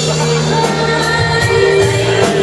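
Live band playing a song, a woman singing lead through the PA over electric bass, electric guitar and drums keeping a steady beat.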